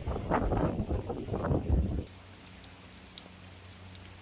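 Rain falling on a wet corrugated greenhouse roof, patchy and louder for the first two seconds. It then turns faint, with a steady low hum and a few single drip ticks.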